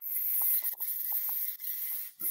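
Aerosol hair spray hissing as it is sprayed into the roots of a mannequin's hair: one burst of about a second and a half, then a short second burst.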